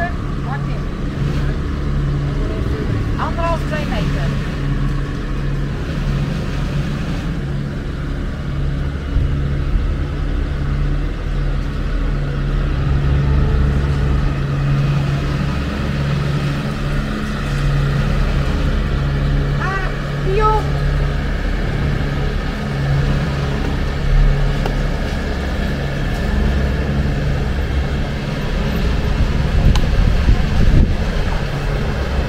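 Motor yacht's engine running steadily at low speed while the boat moves slowly through a marina, a low throbbing hum under a rumble.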